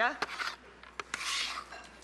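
Kitchen utensil sounds: soft scraping and rubbing with a few light knocks as vegetables are stirred in a cooking pot.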